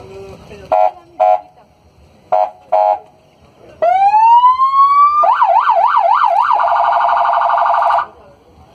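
Electronic siren of a police patrol pickup being cycled through its tones: two pairs of short blips, then a rising wail that turns into a slow up-and-down yelp and then a much faster warble. It is very loud and cuts off suddenly at the end.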